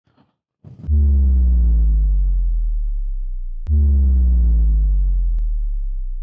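Two long, deep synthesized bass hits about three seconds apart. Each slides down in pitch and slowly fades.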